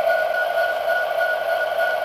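HO-scale Bachmann model diesel locomotive's onboard sound system playing a steady diesel-engine idle through its small speaker, thin and without bass.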